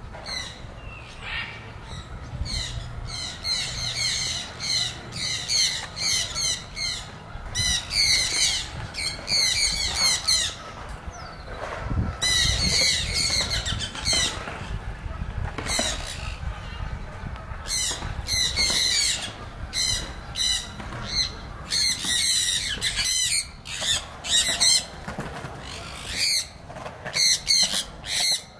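Birds squawking: harsh calls repeated several times a second in bouts, with a couple of brief lulls.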